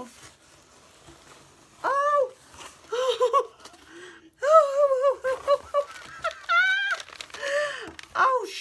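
A woman's high-pitched wordless vocal sounds of delight, a short rising-and-falling 'ooh' about two seconds in, then a run of wavering squeals and hums, the longest near the end.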